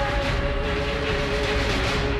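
Disaster-film soundtrack: held notes over a loud, steady rushing storm noise and a deep rumble.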